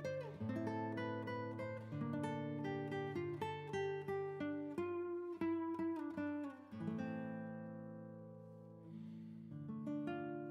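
Background music of picked acoustic guitar notes. A chord rings and slowly fades over the last few seconds, and new notes come in near the end.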